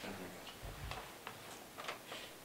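Faint, irregular light clicks and ticks of paper being handled at a table, with a soft low thump under a second in.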